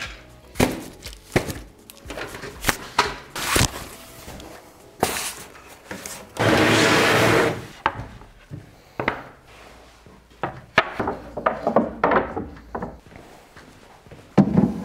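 Scattered knocks and thuds of flat cardboard packaging and wood being handled while a wall-hung wooden shelf is filled, with music underneath. About halfway through there is a loud rushing noise lasting about a second.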